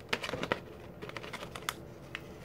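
Plastic blister packaging of a fidget spinner being handled and picked at by fingers, giving a run of irregular sharp clicks and taps.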